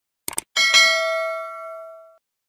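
Subscribe-button animation sound effect: a quick double mouse click, then a bright bell ding about half a second in that rings and fades away over about a second and a half.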